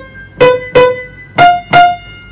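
Piano chords struck in two pairs, each chord played twice in quick succession, with the second pair higher. It is a teaching demonstration of voicing the chords so that the top note stands out.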